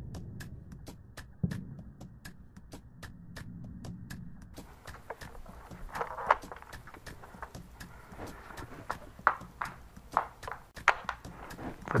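A drum-fed Nerf foam-dart blaster being cocked and fired, heard as a few short sharp clacks in the second half, over a steady fast ticking.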